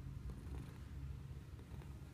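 A black-and-white domestic cat purring in a low, steady rumble while being stroked.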